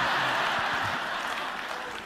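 Congregation applauding, the clapping steadily dying away.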